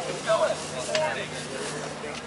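Indistinct voices talking in short snatches, over a steady low hum.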